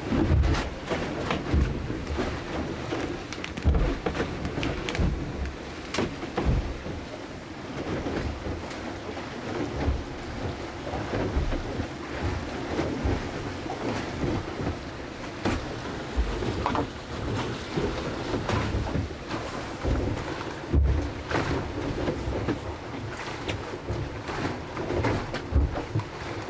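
Steady rushing water noise with irregular low thumps, from a Mini 6.50 racing sailboat's hull moving through the sea, heard inside its small cabin. Under it are scattered clicks and rustles as hot water is poured from a Jetboil stove cup into a freeze-dried meal pouch and stirred.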